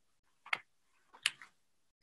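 Two short, faint clicks about three-quarters of a second apart, over near silence.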